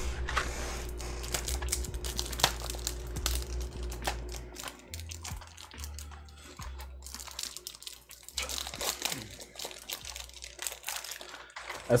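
Crinkling, rustling and small irregular clicks from something being handled close to the microphone, over quiet background music.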